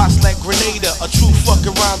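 Hip hop music: a rapper's verse over a drum beat with a heavy kick drum and hi-hats.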